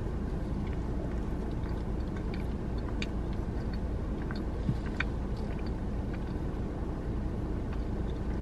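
Quiet chewing of a mouthful of burrito, with a few faint mouth clicks, over a steady low rumble inside a car's cabin.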